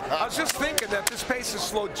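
Voices talking and shouting over arena noise, with a few sharp knocks about the middle.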